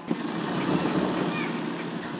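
Industrial sewing machine running steadily as fabric is fed through it.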